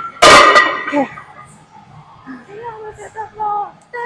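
People talking, with one loud, brief burst of sound about a quarter second in that is louder than the voices.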